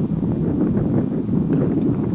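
Wind buffeting the camcorder microphone: a steady, loud low rumble, with a faint click about one and a half seconds in.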